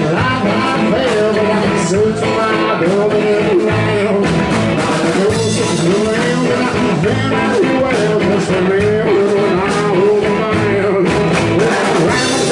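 Live band playing loudly with a male lead vocal singing over electric guitar and accordion.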